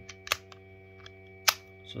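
Pieces of a physical 2^4 puzzle clicking as it is twisted and regrouped by hand: a few sharp clicks, the loudest about a second and a half in.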